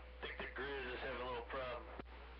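A man's voice coming through a CB radio receiver's speaker, thin and cut off in the highs, with an unintelligible stretch of talk starting a moment in, over a steady low hum.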